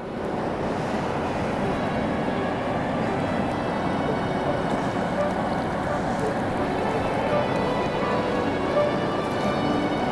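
Steady rushing of a fast-flowing river. Faint background music can be heard under it and grows louder near the end.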